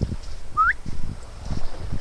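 A single short whistle rising in pitch, about a third of a second long, a little past a quarter of the way in. It sits over low, uneven wind rumble on the microphone.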